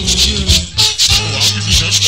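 Live go-go band music: a steady bass line under a dense percussion groove, with crisp high percussion strokes about four to five times a second.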